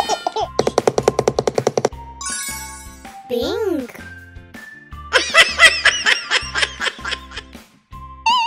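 Children's cartoon background music with a steady beat, overlaid with sound effects. About half a second in comes a fast rattling run of about ten pulses a second lasting over a second; around three and a half seconds a pitch glides up and back down; from about five seconds a cartoon baby voice giggles for a second and a half.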